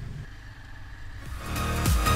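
Steady low motorcycle engine and road rumble, then electronic dance music fading in about a second and a half in and taking over.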